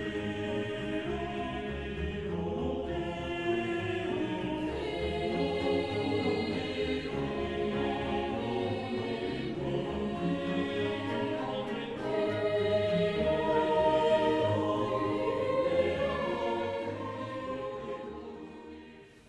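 Choral music: a choir singing slow, sustained chords that fade out near the end.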